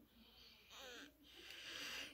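Near silence with faint breathing: a short wheezy breath about a second in, then a soft inhale near the end.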